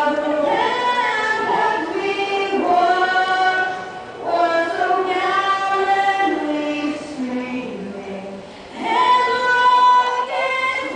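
A teenage girl singing a national anthem solo and unaccompanied into a microphone, in long held phrases with short breaks about four seconds and eight and a half seconds in.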